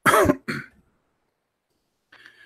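A man clearing his throat: two short bursts in the first second, the first the louder.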